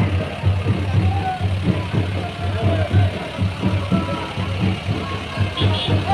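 Low, uneven rumble of a vehicle engine moving slowly with a procession, with faint voices of the crowd mixed in.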